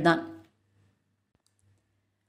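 A woman's narrating voice ends a word in the first half-second, then near silence with a faint low hum and one faint click about a second and a half in.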